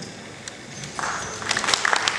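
Audience applause starting about a second in: a few scattered claps quickly thickening into many people clapping.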